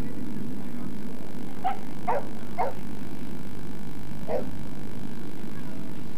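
A boxer dog gives four short barks: three in quick succession a little under two seconds in, then one more about four seconds in, over a steady low background hum.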